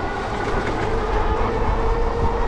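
Lectric XP e-bike's hub motor whining steadily under power as the bike picks up speed, the pitch rising slightly, over tyre rumble and wind buffeting the microphone.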